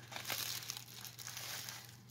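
Paper and clear plastic wrapping crinkling and rustling as craft items are handled, with a few small crackles.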